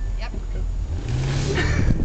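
Chrysler 300 sedan's engine accelerating hard, heard from inside the cabin, swelling louder about a second in.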